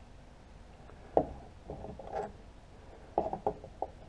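Hard plastic clicks and knocks from a GoPro camera in its case being handled and fitted together with its mic adapter and mount parts. There is a sharp click about a second in, a few more around two seconds, and a quick run of clicks near the end.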